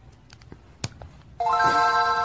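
An electronic chime or ringtone, several steady notes sounding together, starts suddenly about a second and a half in and slowly fades. Before it there is only a faint quiet room and one sharp click.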